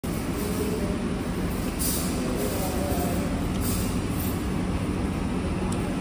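Steady low rumbling background noise of a restaurant dining room, with no distinct events.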